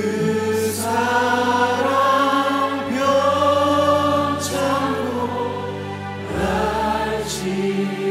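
Live worship band and a group of singers performing a slow hymn in Korean. The singers hold long notes over keyboards, bass and drums.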